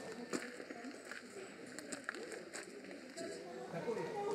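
Indistinct voices of people talking in the background, with a few sharp clicks.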